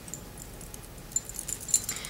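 Quiet hand-handling sounds while a small cloth is wiped over the skin: a few light, sharp clicks, mostly in the second half.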